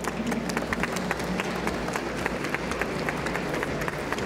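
Light, scattered audience applause: many irregular hand claps at an even level.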